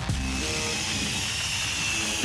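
A power tool running steadily with a high hiss and a thin whine.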